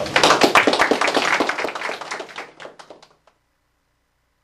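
Audience applause, many hands clapping at once, fading away a little over three seconds in.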